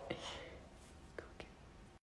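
Soft, breathy laughter trailing off: a last "ha" followed by a quiet airy exhale, with two faint short sounds a little past a second in.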